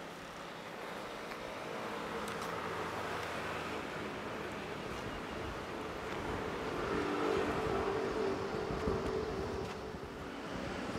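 Steady outdoor hum of road traffic, a continuous wash of vehicle noise that grows a little louder in the second half.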